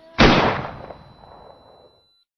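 A single loud bang about a quarter of a second in, with an echoing tail that dies away over about a second and a half before the sound cuts to silence.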